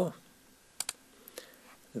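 Two quick clicks close together from computer input, stepping the on-screen chess game forward one move, followed by a few faint ticks.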